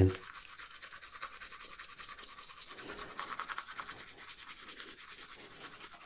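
Faint, fast, steady scrubbing of laptop trackpad circuit boards in acetone, working the softened glue off the boards.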